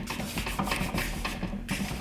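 Hands rubbing and pressing blue painter's tape down onto the top of a plastic battery case: an irregular run of soft scratchy rubs and small ticks.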